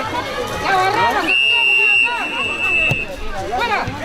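Excited shouting voices, with one long, steady referee's whistle blast lasting nearly two seconds, starting a little over a second in.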